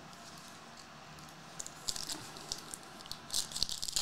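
Foil trading card pack wrapper crinkling and crackling in the hands as a pack is picked up and opened. The irregular crackles start about a second and a half in and grow denser near the end.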